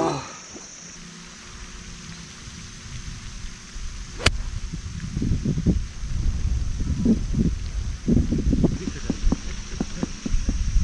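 A single crisp click of a golf iron striking the ball about four seconds in, on a fairway approach shot. A low rumble and faint voices follow.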